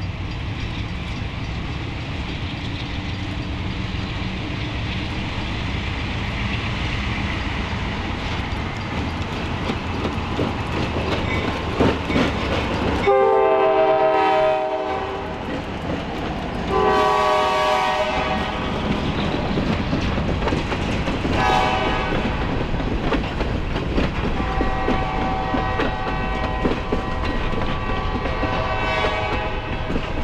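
Freight train led by Alco C430 and C424 diesel locomotives passing close by, with a steady heavy engine rumble. About halfway through, the lead unit's horn sounds two long blasts, a short one, then a longer one near the end, the grade-crossing pattern. Steel wheels click over the rail joints as the hopper cars roll past.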